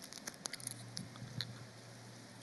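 Faint scattered light clicks and ticks, typical of a congregation handling small communion cups after the call to drink. A low steady hum comes in about half a second in.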